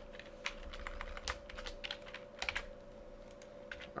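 Quiet, irregular clicking from a computer keyboard and mouse, a dozen or so scattered taps, over a faint steady hum.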